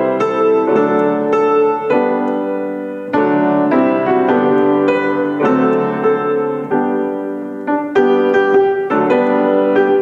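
Grand piano playing a song tune with melody over chords, notes struck in a steady pulse and left to ring.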